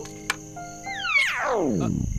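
A single knock early on, then a loud comic sound effect: a pitched tone sliding steeply down from high to very low over about a second.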